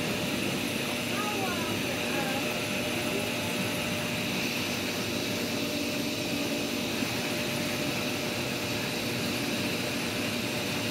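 Whirlpool bathtub jets running steadily, the pump's hum under a constant rush of churning water.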